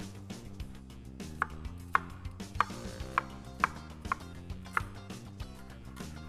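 Chef's knife dicing a red onion on a wooden cutting board: a steady run of sharp knife strikes on the board, about two a second.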